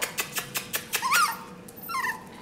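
Small puppy yipping: a short high yelp that rises and falls about a second in, and another falling yelp near the end, over a run of quick light clicks in the first second.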